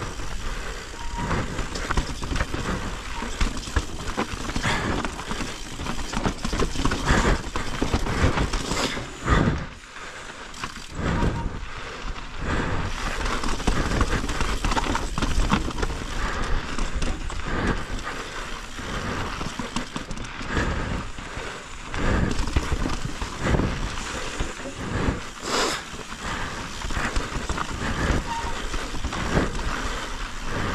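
Mountain bike descending rocky dirt singletrack: tyres rolling and crunching over dirt and stones, with frequent rattles and clunks from the bike over the rough ground and a steady rush of wind on the microphone. There is a brief lull about ten seconds in.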